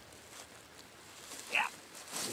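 Faint rustling of dry leaves and handling as a dead doe is gripped on leaf-covered ground, with a short exertion 'yeah' about one and a half seconds in.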